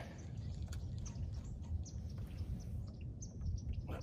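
Faint, scattered bird chirps over a steady low rumble.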